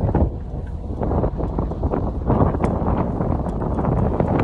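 Strong wind buffeting the phone's microphone, a dense low rumble that swells and eases in gusts.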